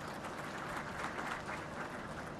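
Audience applauding, the clapping strongest about a second in and easing off toward the end.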